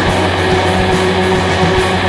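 Loud instrumental passage of an alternative rock track: distorted electric guitars over bass and drums, steady and dense.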